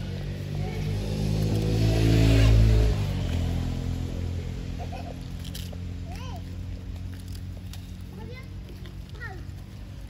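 A motor's low hum swells to a loud peak about two and a half seconds in, then drops away, like a vehicle passing close by. Later come several short, high chirping calls.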